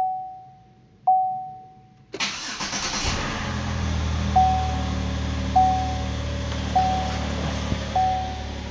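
Two electronic dashboard chimes from inside the cabin of a 2007 Chevrolet Impala. About two seconds in, its engine cranks briefly, catches, and settles into a steady idle. Over the idle a short warning chime repeats about every second and a quarter.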